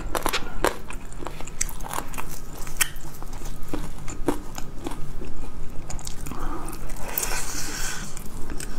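Close-miked eating of sauce-coated fried chicken: crisp biting, crunching and wet chewing clicks throughout. A louder, denser rustle comes near the end.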